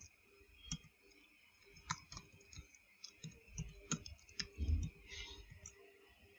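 Typing on a computer keyboard: faint, irregular key clicks, with one heavier, deeper knock about three-quarters of the way through.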